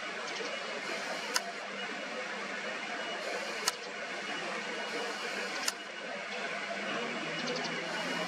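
Steady background hiss with a faint low hum, broken by a sharp click about every two seconds; the hum grows a little stronger near the end.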